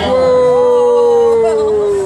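A voice holding one long hooting "ooh" for about two seconds, sliding slowly down in pitch.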